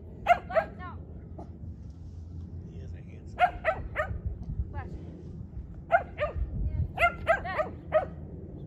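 Small dog barking repeatedly in quick, high-pitched runs of two to five barks, several times over, while it runs the course.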